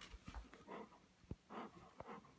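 Dog whining faintly: a few short whines, with a soft low thump just past a second in.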